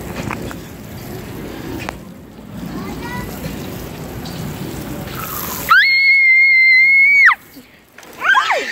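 Water from a playground sprinkler spraying and splashing. Nearly six seconds in, a loud, high-pitched, steady squeal cuts in and holds for about a second and a half.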